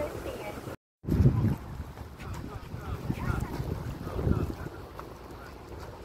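Wind buffeting the microphone, an uneven low rumble in gusts, with faint voices in the background. The sound drops out to silence briefly just before a second in.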